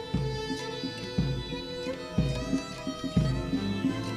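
Military band playing a slow march: held notes over a bass drum beating about once a second.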